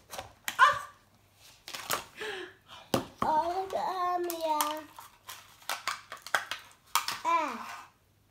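Clicks and a sharp knock of hard plastic as a plastic toy egg capsule is twisted and pulled open, about three seconds in. A young girl's voice makes wordless exclamations and drawn-out sounds over it.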